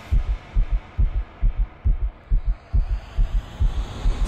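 Deep heartbeat sound effect: a quick, even run of low double thumps, about two beats a second.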